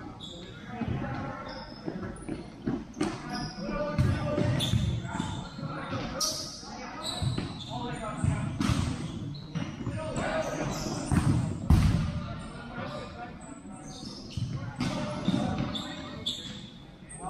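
A futsal ball being kicked, passed and bouncing on a sport-court floor during play, heard as irregular thuds in a large echoing hall. Players call out over it, and short high squeaks come through now and then.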